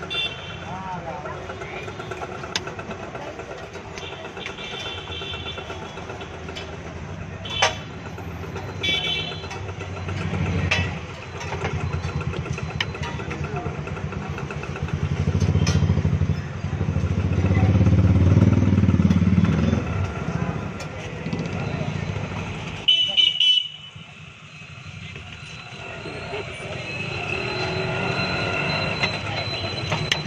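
Street traffic: motorcycle engines passing, loudest about halfway through, with short horn toots, one loud one near the end, and voices in the background.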